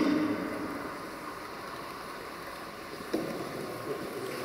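H0-scale model freight train running along the layout track with a steady running noise, with a brief louder sound right at the start and a single click about three seconds in.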